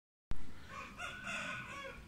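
A short knock as the sound starts, then a drawn-out, pitched animal call lasting about a second that falls slightly at the end.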